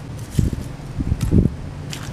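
Wind buffeting the microphone in two low rumbles over a steady low background hum, with a few faint crackles as fingers pick at the hardened, scorched corn syrup and aluminum flakes.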